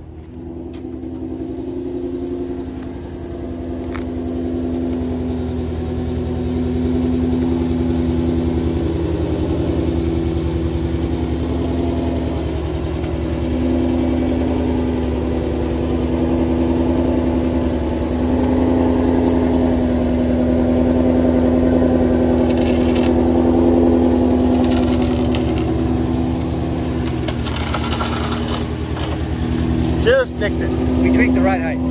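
Ford Mustang GT350-based race car's V8 idling steadily as the car rolls down a trailer ramp, its exhaust smoking.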